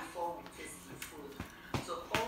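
A faint voice briefly at the start, then two short light taps about a third of a second apart.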